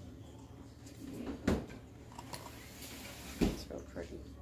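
Two brief clicks as pieces of hard ribbon candy are handled, about a second and a half in and again near the end.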